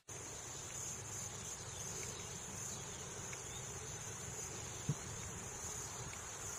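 Steady high-pitched chorus of insects, unbroken throughout, with a single short thump about five seconds in.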